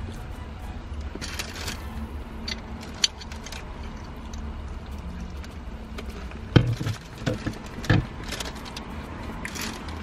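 Handling noises of eating in a car: paper taco wrappers rustling and a hot-sauce bottle being handled, with two sharper knocks about six and a half and eight seconds in, over a low steady hum.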